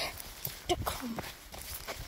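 Footsteps through grass with the rustle and knocks of a phone being carried at a walk: a few irregular steps over a low rumble.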